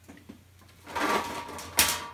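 A plastic storage box scraping as it is slid out, starting about a second in, then a sharp knock near the end.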